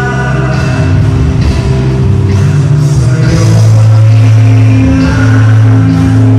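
Live band playing loud rock music through a PA, with guitar, held bass notes and a steady drum beat.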